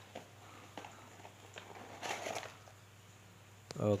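Cardboard box and its plastic-wrapped insert being handled: faint light taps and scrapes, with a brief rustle about two seconds in.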